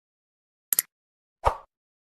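Subscribe-button animation sound effects: a quick double mouse click a little over a third of the way in, then a short pop about halfway after it.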